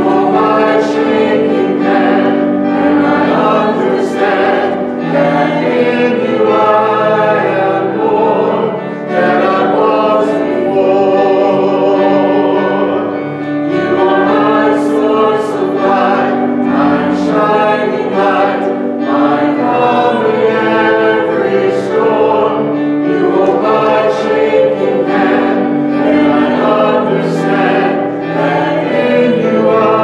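A small robed church choir singing a hymn, several voices together over long, steady held low notes.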